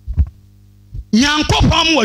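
Steady electrical hum from a public-address system during a pause, broken by a short thump. From about a second in, a man's voice preaches loudly through the microphone.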